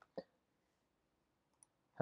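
Near silence, with one short click a fraction of a second in and a faint tick near the end.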